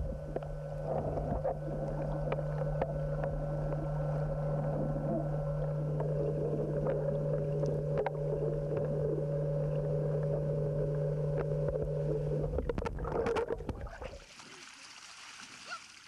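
Steady motor hum heard underwater, with scattered clicks and bubbling, plausibly the dive boat's engine or air compressor carried through the water. The hum cuts off about 13 seconds in, leaving a quieter wash of water.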